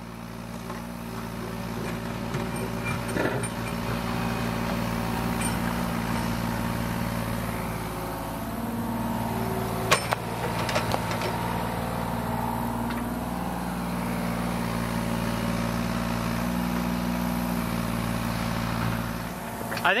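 Kubota U35-4 mini excavator's diesel engine running steadily under hydraulic load as it digs and dumps soil, its note shifting slightly as the arm works. A single sharp knock about halfway through, as the bucket dumps its load.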